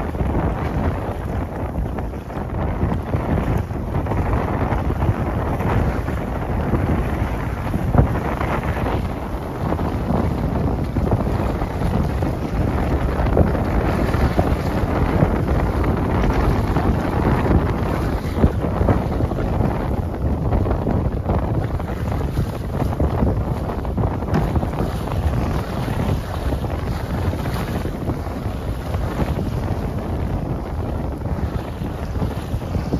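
Steady wind buffeting the microphone over water rushing and splashing along the hull of a Flicka 20 sailboat moving briskly under sail in a fresh breeze, with a few brief louder gusts or splashes.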